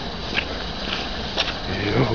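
Rustling and scuffing footsteps through undergrowth, with a few brief clicks or snaps.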